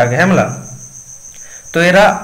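A man's voice at the start and again near the end, with a pause between, over a steady high-pitched trill like that of a cricket.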